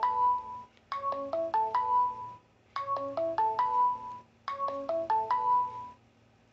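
Smartphone ringtone: a short marimba-like phrase of struck notes, repeated three times with short pauses between. It is an incoming alert call placed by a SIM800L GSM module to report a mains power failure, and it cuts off at the end when the module hangs up automatically.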